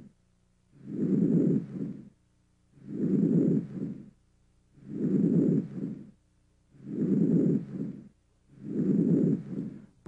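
Normal vesicular breath sounds heard on auscultation of the chest: five breaths, about one every two seconds. Each is a soft, low-pitched rustle through inspiration that fades away early in expiration, with a quiet gap before the next breath.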